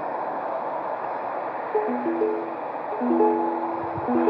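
A slightly out-of-tune ukulele: after a steady hiss, a few notes and chords are picked from about two seconds in and left to ring.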